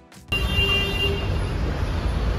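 A music track cuts off abruptly about a third of a second in, giving way to steady street traffic noise with a low rumble.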